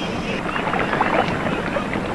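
Small wooden sampan being paddled, the paddle splashing in the water with irregular strokes over a steady wash of water noise.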